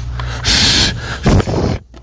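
A man's breathy laugh: a sharp hissing snort of air about half a second in, then a short gasp.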